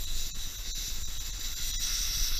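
Airsoft green gas hissing steadily out of an inverted gas can into the fill valve of a Tornado impact grenade, with a faint whistle riding on the hiss as the grenade's gas reservoir is charged.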